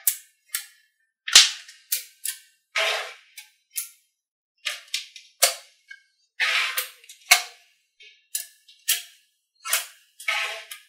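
Small magnetic balls clicking and snapping together as strips of them are laid down and pressed into place. The clicks are sharp and irregular, some with a short rattle, with brief quiet gaps between them.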